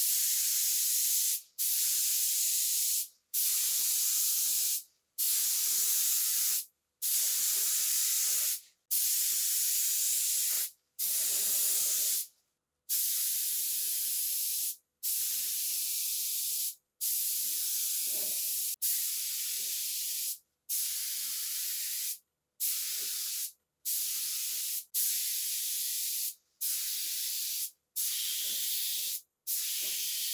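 Gravity-feed spray gun on compressed air spraying car paint in repeated short passes: a high hiss lasting one to two seconds each time, stopping sharply between passes, around eighteen times in a row.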